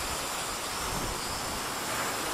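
Hubsan X4 H502E quadcopter in flight, its small propellers and motors giving a steady whirring rush with wind noise on the onboard microphone.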